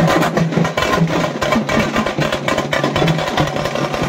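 Loud, fast drumming in a dense, driving rhythm of rapid strikes, typical of the drum bands that lead a Bonalu Thotala procession.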